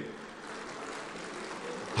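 Faint, steady background noise of a crowded meeting hall: an even low hiss with no distinct sounds in it.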